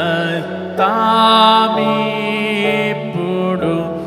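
A man singing a slow Telugu Christian hymn into a microphone, in long held notes with a wavering pitch, over a steady low sustained tone.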